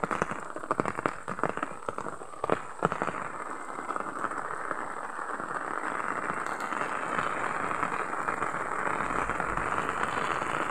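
Steady rain, with a run of crackling clicks in the first three seconds; the rain hiss grows a little louder toward the end.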